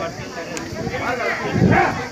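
People's voices talking around a crowd, with one louder voice near the end.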